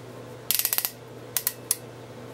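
Ratchet lock of an AngryGun SOCOM556 airsoft suppressor clicking as it is twisted onto the flash hider. A quick run of about eight clicks comes about half a second in, then three single clicks. The clicks mean the suppressor is locking down tight.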